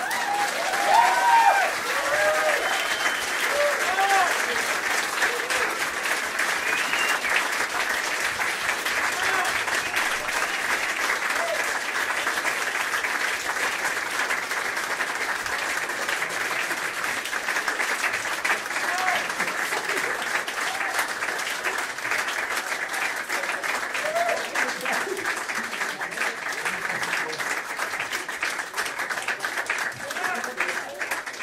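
Live audience applauding steadily, with whoops and shouts over the first few seconds.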